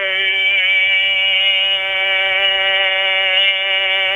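One long held note of Hmong kwv txhiaj sung poetry, a single voice sustaining one vowel with a slight waver at a steady pitch.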